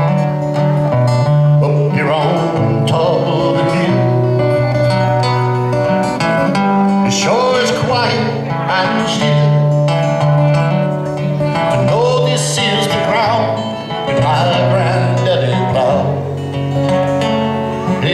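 Acoustic guitar playing a country song live, with a melody line rising and falling above the chords.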